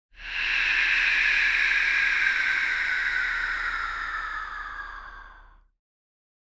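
Logo intro sound effect: a hissing whoosh that slowly falls in pitch and fades away over about five and a half seconds, cutting to silence near the end.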